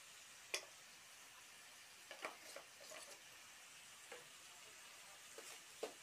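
Faint sizzling of minced meat and onions frying in oil in an aluminium pot, with a few light clicks scattered through it.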